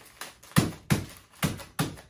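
A fist pounding a wrapped honey oat granola bar on a tabletop, crushing it to powder: repeated thumps, about three a second.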